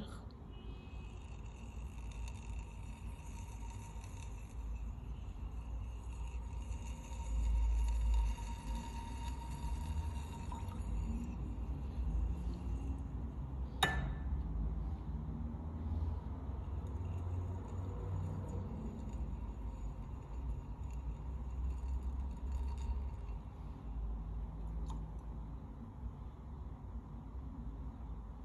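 Glass test tube handled while being warmed over a spirit lamp: a faint low rumble, with one sharp glass clink about fourteen seconds in.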